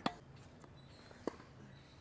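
One short, sharp impact of a tennis ball struck by a racket on a one-handed backhand, about a second and a quarter in, against an otherwise quiet court.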